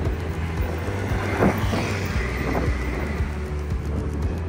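Background music with a steady low beat, over street traffic noise; a motor vehicle passes, loudest about a second and a half in.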